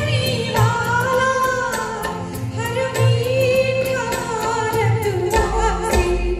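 A woman singing a slow Hindi patriotic song live, holding long notes, over band accompaniment with a steady drum beat.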